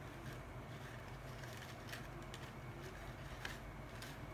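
Faint handling sounds of a paper bag: a few light clicks and rustles of paper over a steady low hum.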